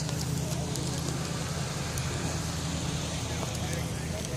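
A car engine idling with a low steady drone, with faint footsteps on pavement.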